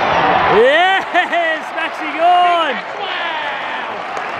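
A man close to the microphone cheering with several loud, drawn-out shouts over the crowd noise of a football stadium, reacting to a long set shot at goal.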